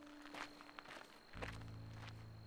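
Footsteps crunching on a gravel trail, a few strides passing close by. A low steady hum comes in about two-thirds of the way through.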